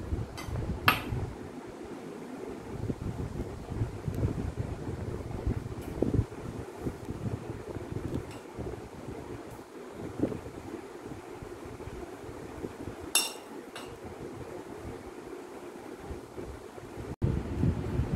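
Glass bowls and a metal spoon clinking a few times, twice near the start and twice about 13 seconds in, as chopped vegetables are tipped from small glass bowls and stirred into mayonnaise. A steady low rumble of background noise runs underneath.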